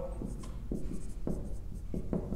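Marker pen writing on a whiteboard: several short, faint strokes as an equation is written out.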